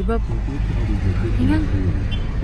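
Voices talking inside a moving taxi over the steady low rumble of its engine and road noise.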